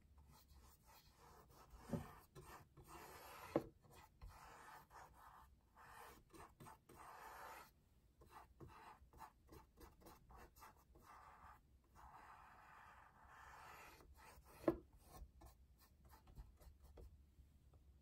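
Faint scratchy rubbing of a paintbrush laying paint onto a canvas in long strokes, coming in several stretches of a second or two, with three short knocks, the loudest about three-quarters of the way through.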